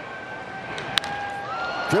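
Sharp crack of a baseball bat hitting a pitch about a second in, over steady ballpark crowd noise that grows a little louder after contact.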